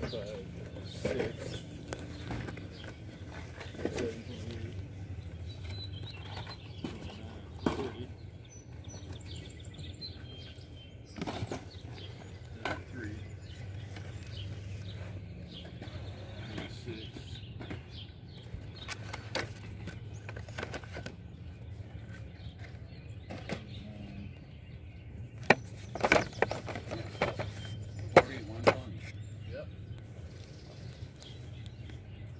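Outdoor ambience with a steady low hum and faint voices, broken by scattered clicks and knocks of handling. A cluster of sharper, louder clicks comes near the end.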